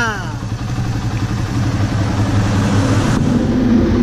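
Suzuki Raider 150's single-cylinder four-stroke engine idling steadily, growing a little louder in the second half.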